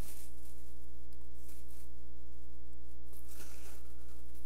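Steady electrical mains hum, a constant low buzz with a stack of even overtones, from the sound or recording system.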